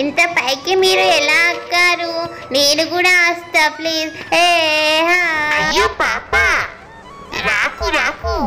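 A high-pitched, child-like voice singing in long held notes that waver in pitch, then sliding up and down in pitch near the end.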